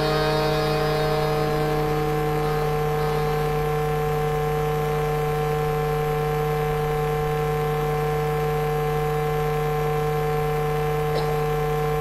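A steady hum made of several held tones that does not change in pitch or level.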